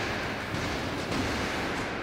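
A stunt car flipping through the air and crashing down onto the road: a sudden loud, noisy crash of metal and debris that holds steady rather than dying away.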